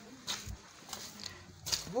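A person's short 'oof' exclamation near the end, rising then falling in pitch, over faint footsteps on a muddy, waterlogged path.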